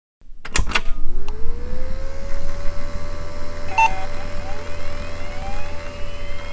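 A couple of clicks, then a motor whine that rises in pitch for about a second and holds steady over a low rumble, with a short beep near the middle.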